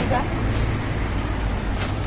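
Steady low rumble of street traffic or a nearby running vehicle.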